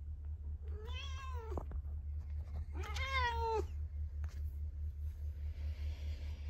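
Grey-and-white domestic cat meowing twice, each meow about a second long with a slight rise and fall in pitch, over a steady low hum.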